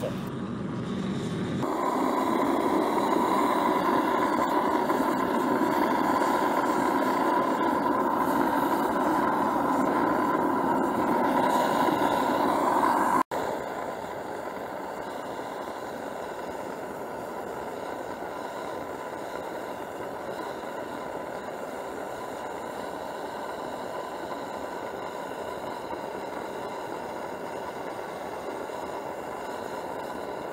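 Diesel-fired 'Baby Godzilla' foundry burner running steadily, a rushing noise with a high steady tone in it, coming up about two seconds in. After a sudden cut partway through, it carries on slightly quieter.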